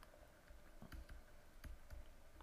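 Faint, scattered clicks of a stylus tip tapping and lifting on a pen tablet while handwriting, a handful over two seconds.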